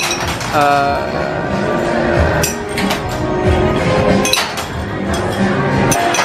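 Plastic rings from a carnival ring-toss game clinking against rows of glass bottles: several sharp, separate clinks, over steady background music.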